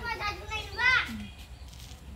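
Children's voices calling out and chattering, with one loud high-pitched shout about a second in.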